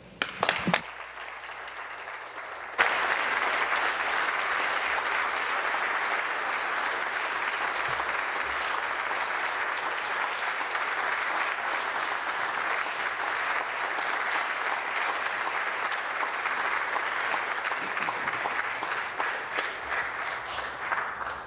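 A chamber full of legislators applauding: the clapping comes in abruptly about three seconds in and then continues steadily.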